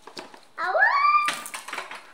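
A young child's excited squeal, rising steeply in pitch about half a second in, followed by a short, harsh noisy burst.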